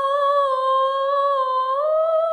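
An unaccompanied voice holding one long, wordless high note, steady in pitch, that steps up slightly near the end.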